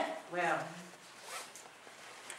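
Speech only: the tail of a loud shouted phrase falling away, then a short faint spoken word about half a second in, and low room sound after it.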